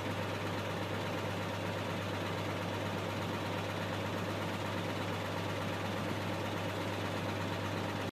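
Detroit Diesel 6V92 two-stroke V6 diesel of a 1979 Kenworth W900 dump truck idling steadily, a low, even drone.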